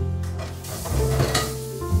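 Background music over a brief hissing wash of kitchen-sink noise from washing up. The hiss starts about half a second in, swells to a peak near the middle and fades out just before the end.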